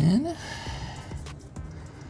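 A man's short sigh that rises in pitch right at the start, over quiet background music. A faint click comes a little over a second in.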